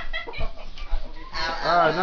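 High-pitched laughing and squealing voices, quieter for a moment and picking up again near the end.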